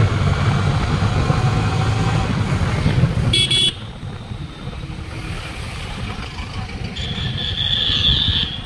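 Road noise from a moving motorcycle: wind and engine rumble, with a short vehicle horn toot about three and a half seconds in. The noise then drops lower, and a high horn tone sounds near the end.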